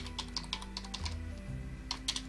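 Computer keyboard typing: a quick run of about seven keystrokes in the first second, then one more near the end, over background music with sustained low notes.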